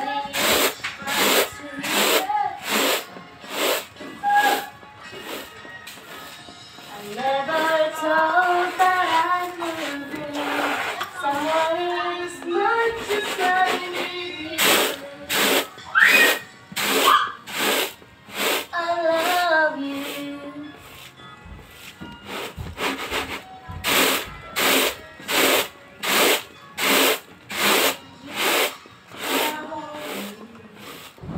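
Unhusked glutinous rice being winnowed in a woven bamboo tray, the grains swishing and rattling with each toss about twice a second. A singing voice fills the middle part, when the tossing sound drops back.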